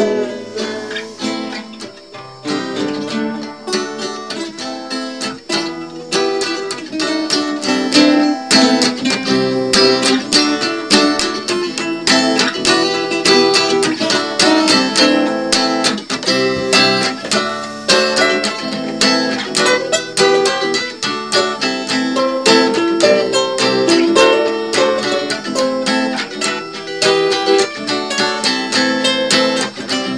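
Guitar playing an instrumental passage of plucked and strummed chords at a steady pulse, with no singing. It gets a little louder about eight seconds in.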